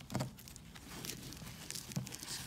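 Soft rustling and handling noise as a spiked fabric collar strip is pressed down onto a dog vest's hook-and-loop fastening. There is a short soft thump about a quarter second in and a small click near the end.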